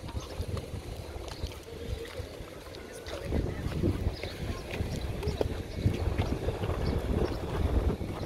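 Wind buffeting a smartphone's microphone while the holder walks, an uneven low rumble, with scattered short scuffs of footsteps on pavement.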